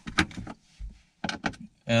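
A few sharp clicks and knocks and one dull thump from hands working on the car's center console trim and shifter area.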